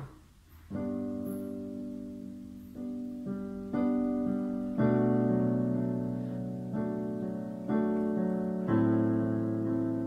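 Electronic keyboard on a piano voice playing the song's intro chords in G major softly in a slow four-beat ballad rhythm. The chords are struck every second or so and left to ring and fade, starting just under a second in.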